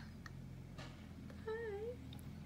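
A kitten gives one short, wavering mew about one and a half seconds in, with a few small clicks near the start.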